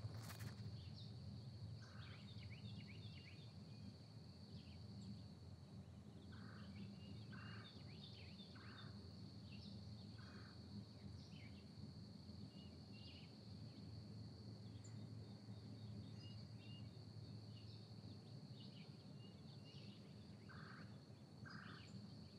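Near silence: faint room tone with a steady high-pitched whine and scattered faint bird calls from outside.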